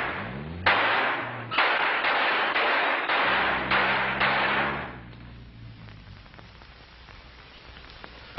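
Car engine revving as the car races off, with a rising whine in the first second, under a volley of loud gunshots that carries on for about four seconds. It then fades to a low level.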